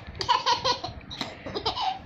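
A baby laughing in two runs of short, high-pitched giggles, the second run starting just after a second in.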